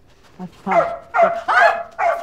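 A large dog barking about three times in quick succession, starting about half a second in.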